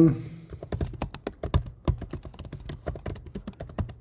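Computer keyboard typing: a quick, uneven run of key clicks as a word is typed.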